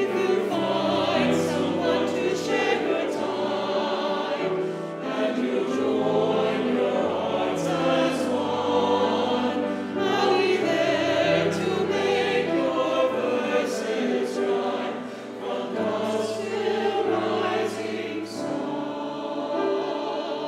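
Mixed church choir of men's and women's voices singing together in parts, with held notes.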